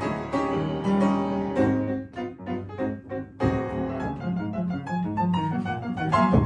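Upright piano played solo with both hands, chords over a bass line and no singing. About two seconds in it breaks into a few short, clipped chords with gaps between them, then fuller playing resumes.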